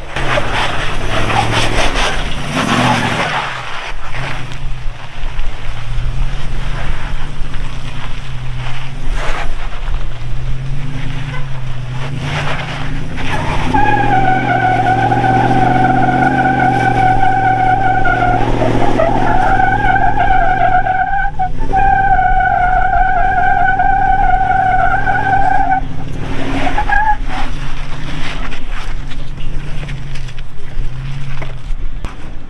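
2006 Toyota 4Runner's 4.7 L V8 running under load as the truck crawls a rock ledge, with the tires scrabbling for traction. About halfway in, a steady high-pitched squeal sets in and holds for roughly twelve seconds, breaking off briefly twice.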